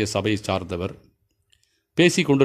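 A man speaking in Tamil for about the first second, then a pause of near silence.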